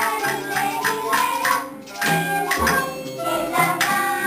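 A group of young children singing a song together over instrumental accompaniment, with a regular percussion beat running through it.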